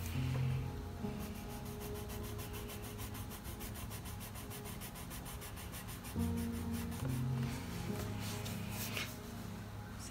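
Coloured pencil (Faber-Castell Polychromos) scratching on sketchbook paper in quick, even back-and-forth shading strokes, pressed down firmly, stopping near the end. Soft background music with sustained low chords plays underneath.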